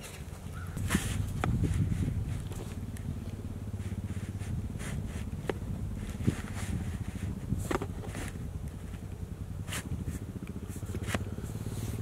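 Footsteps crunching through dry fallen leaves and grass, with scattered rustles and snaps of brush, the busiest about a second in. A steady low drone runs underneath.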